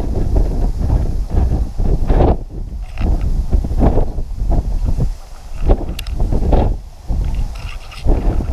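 Wind buffeting the camera's microphone in irregular loud gusts, with tall grass rustling and brushing past.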